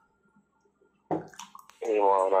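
A pause of about a second in which a person's voice stops, then the voice starts again, with a few short clicks, and goes on speaking near the end.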